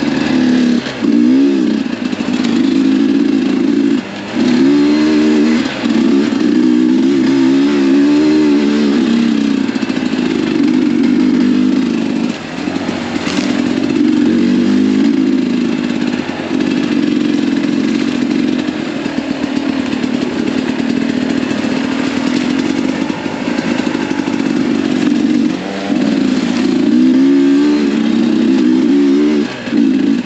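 Sherco 300 SE Factory two-stroke single-cylinder dirt-bike engine under way, its revs rising and falling continuously with the throttle. The throttle shuts off briefly several times before it picks up again.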